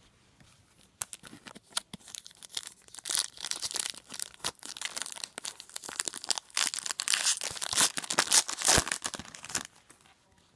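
Wrapper of a Garbage Pail Kids Chrome trading-card pack being torn open and crinkled by hand: a run of crackling tears and rustles that starts about a second in, grows louder in the second half and stops just before the end.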